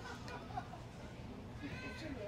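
Quiet pause in conversation: faint room hum, with a brief, faint, high-pitched voice-like sound near the end.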